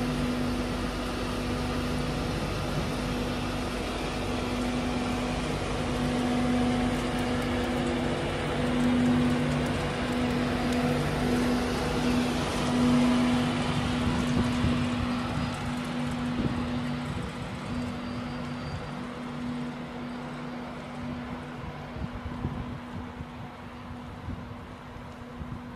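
Class 91 electric locomotive and its coaches running past, a steady electric hum with two held low tones over rolling noise. The sound is loudest as the locomotive passes about halfway through, then slowly fades as it draws away.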